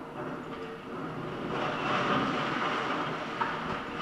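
Demolition excavator working in rubble: engine running, with grinding and scraping of concrete and metal debris that grows louder about one and a half seconds in, and a sharp knock near the end.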